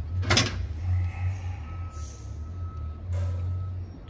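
Steady low workshop hum, with one short sharp scrape about a third of a second in and faint rustling after it.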